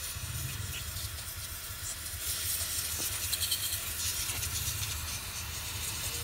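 Aerosol carburettor cleaner spraying in one long continuous hiss into a scooter's fuel-injection throttle body, flushing out carbon deposits; the hiss grows stronger about two seconds in.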